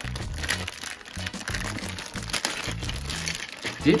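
Thin clear plastic bag crinkling and crackling as hands pull it open, over steady background music.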